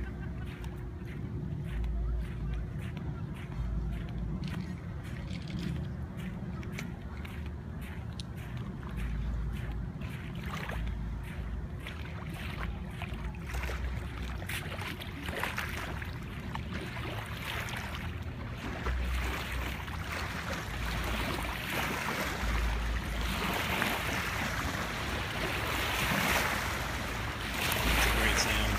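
Wind gusting on the phone's microphone, with footsteps on wet sand and small waves lapping at the shoreline.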